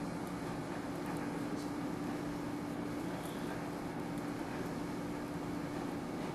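Steady room noise: a soft even hiss with a constant low hum, and a few faint ticks.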